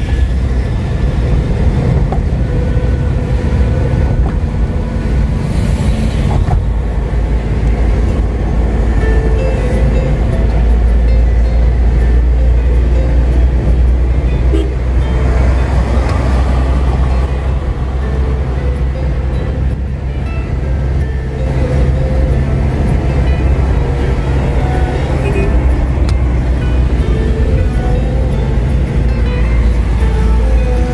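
Steady low rumble of road and engine noise inside a Toyota Innova's cabin at highway speed, with music playing over it.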